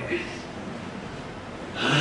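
A man's quick in-breath close to the microphone in a pause of his talk, then faint steady hiss, with his speech resuming near the end.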